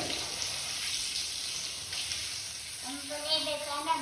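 Fish pieces frying in hot ghee in a frying pan, sizzling steadily with the ghee spattering. A soft voice comes in near the end.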